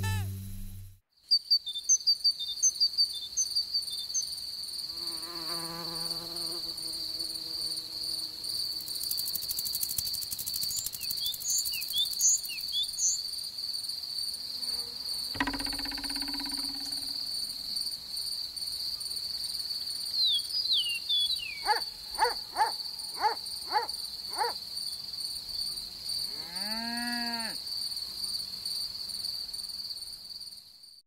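A music cue cuts off about a second in. A cricket then chirrs in one steady high trill over a field ambience. Brief bird chirps and a few other short animal calls come and go over it.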